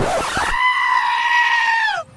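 A single long, high scream-like cry that starts after a short burst of noise, holds one pitch for about a second and a half, and drops off at the end.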